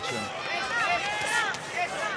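Boxing arena crowd noise with several voices shouting, high-pitched and overlapping, during the exchange.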